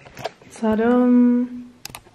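A woman's voice holding a single steady hummed 'mmm' for just under a second, an appreciative sound over food, with a few light clicks before and after it.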